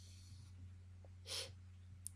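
Near silence with a steady low hum, and a little over a second in one short, quiet breath from a person.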